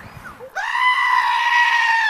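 A dark-faced sheep screaming: a short rising bleat, then about half a second in one long, loud, human-like scream at a steady pitch that cuts off suddenly.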